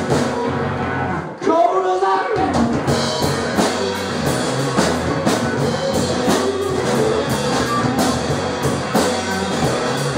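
A rock band playing live: electric guitars over a drum kit with a steady beat, and a voice singing a short phrase about a second and a half in.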